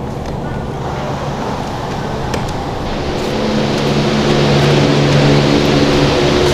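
Refrigeration fans of a walk-in freezer running: a steady rushing noise with a low hum. It grows louder from about halfway through as the freezer door opens onto the cold room.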